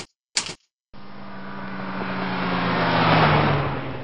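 Car drive-by sound effect: an engine note that grows louder to a peak about three seconds in, its pitch sinking slightly as it passes, then stops abruptly. Two short clicks come before it at the very start.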